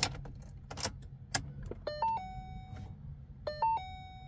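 Ignition key clicking in the lock of a 2013 Shelby GT500 as it is turned to on without starting the engine, followed by the car's electronic warning chime sounding twice, about a second and a half apart.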